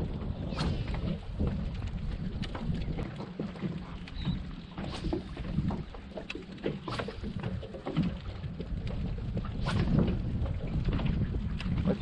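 Water lapping and slapping against a small plastic kayak hull, with wind rumbling on the microphone. Scattered small splashes and knocks come at irregular moments.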